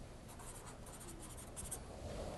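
Faint scratching of writing on a board, in several short, light strokes.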